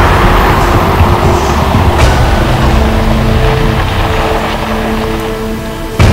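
A Fiat sedan driving up a country road under dramatic score music with long held notes. The music eases down toward the end.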